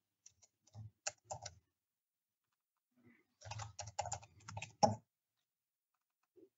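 Computer keyboard typing: a few separate keystrokes about a second in, then a quicker run of keystrokes past the middle.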